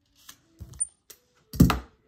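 A few light clicks and taps, then a louder single thump about one and a half seconds in, from a brayer and hands working over rice paper laid on a gel plate on a tabletop.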